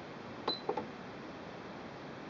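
Two quick button presses on the Singer Quantum Stylist 9960 computerized sewing machine's control panel as letters are scrolled through: a click with a short high beep about half a second in, then a second click just after.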